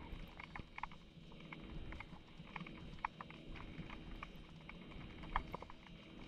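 Underwater ambience picked up through a camera housing: scattered irregular sharp clicks and crackles over a faint low hum, with a louder click about five and a half seconds in.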